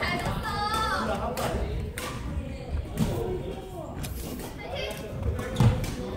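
Badminton rally: sharp clicks of rackets hitting the shuttlecock, roughly one a second, with players' voices in the first second. A heavy thump near the end is the loudest sound.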